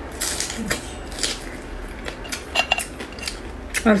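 Close-up mouth sounds of sucking the meat out of a cooked hermit crab leg and chewing it: a string of short, wet smacking and slurping clicks.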